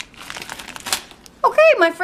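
A plastic Skittles candy bag crinkling as it is handled, for about a second. A woman's voice starts shortly afterwards.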